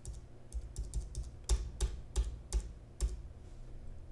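Computer keyboard: the Enter key pressed about nine times in quick, uneven succession, accepting the default answer at each prompt of a command-line setup wizard. The key presses stop about three seconds in.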